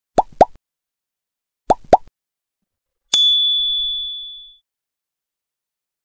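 Like-and-subscribe button animation sound effects: two pairs of quick popping clicks, then a single bright bell ding that rings and fades over about a second and a half.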